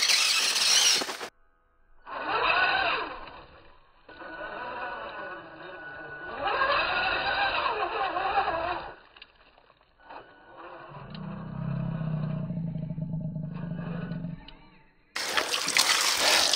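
Electric RC rock crawler driving over dirt, heard slowed down as in slow-motion footage: a drawn-out, gliding motor whine with tyre and dirt noise, in three stretches separated by short gaps. About a second before the end, water from a hose starts spraying.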